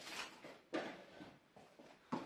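Faint rustling of paper packing and cardboard as a hand reaches into an open cardboard box, in two short bursts: one at the start and one just before a second in.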